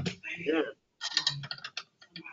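A quick run of clicks about a second in, like typing on a computer keyboard, picked up over the call's audio. Before it there is a short indistinct voice.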